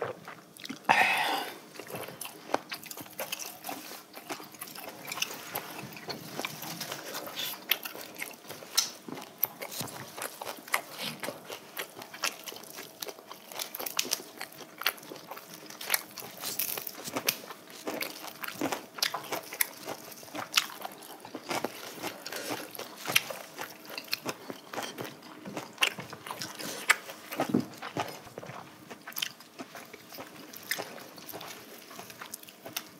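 Close-miked chewing and crunching of grilled pork belly wrapped in fresh lettuce and leaves, irregular wet clicks and crunches continuing throughout. A louder short burst about a second in.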